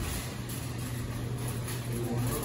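Shopping cart rolling and rattling over a tiled floor, over a steady low hum.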